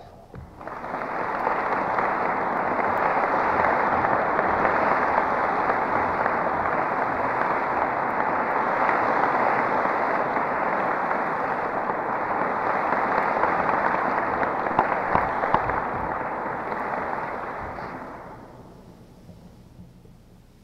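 Audience applauding steadily for about eighteen seconds, then dying away near the end. The sound is thin and muffled, as on an old narrow-band tape recording.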